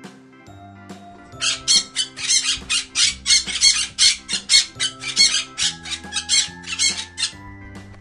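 A green parakeet squawking in a rapid run of shrill calls, about four a second, starting about a second and a half in and stopping near the end, over steady background music.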